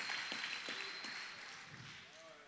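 Applause from a large congregation dying away, thinning to a few scattered claps as it fades.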